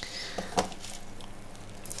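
Small pumice grains rattling in a light, scattered patter of clicks as a hand scoop digs into a plastic tub of them, with one sharper click at the start.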